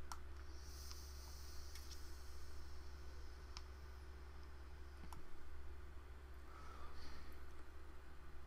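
A hard draw on an e-cigarette tank whose airflow has tightened: a faint hiss of air for about two seconds near the start, with a few faint clicks scattered through.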